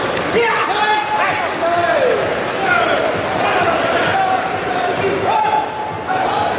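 Voices shouting across a large echoing sports hall during a karate bout: several drawn-out calls and shouts that overlap and glide in pitch, with scattered sharp thuds of blows or feet on the mats.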